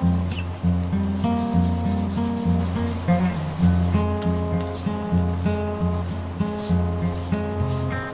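Sandpaper rubbed by hand over the hard, oily wood of a carved lignum vitae sculpture, with background music and a bass line changing about twice a second louder over it.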